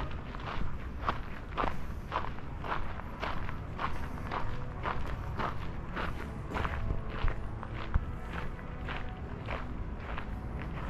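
Footsteps of a person walking steadily along a castle path, about two steps a second.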